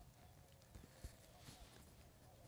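Near silence, with a few faint clicks as fingers press and twist a hard, compacted soil clod that doesn't break apart.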